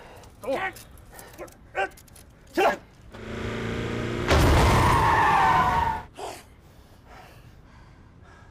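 A car engine rising in pitch and level, then a loud tyre screech lasting nearly two seconds as one vehicle rams another, stopping suddenly about six seconds in.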